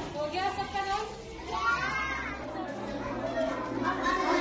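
Children's voices talking and calling out in a classroom, with a few short high-pitched phrases in the first half.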